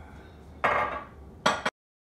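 A mug and a glass set down hard on a granite countertop: two loud knocks about a second apart, the second cut off suddenly.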